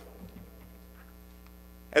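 Faint, steady electrical mains hum from the microphone and sound system, with a few very faint ticks. A man's voice starts again right at the end.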